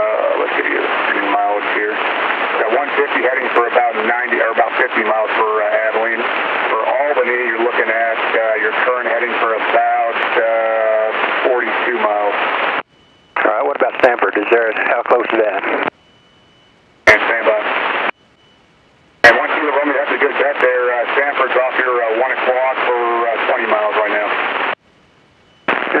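Garbled voice traffic over an aviation VHF radio, thin and narrow-band like a telephone. After about 13 s the transmissions cut off abruptly several times into brief silences, with sharp clicks as the radio keys back in.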